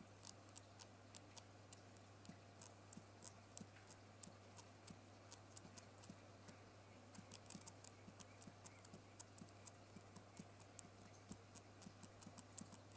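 Faint, rapid clicking of a laptop spacebar pressed over and over at its right end, a few presses a second. This is the key's defective top-right corner, which has a dead spot and creaks when pressed.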